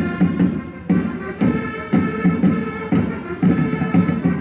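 Trumpets and drums of a traditional Tuscan herald band: long held brass notes over a steady drum beat, about two beats a second.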